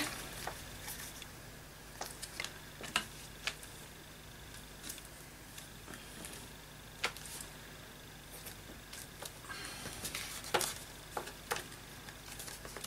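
Faint scattered taps and clicks of hand stamping: a stamp being inked and pressed onto a paper tag on a desk, with a short scuffing sound near the end.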